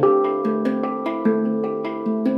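Handpan played with the hands: a quick run of struck notes, about six or seven a second, each ringing on under the next.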